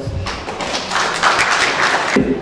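Audience applauding, the clapping growing louder about a second in.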